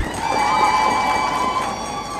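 A crowd clapping, with a steady high tone held over the clapping for about a second and a half.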